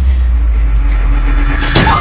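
A loud, steady deep rumble drone of trailer sound design, ending in a sharp hit near the end.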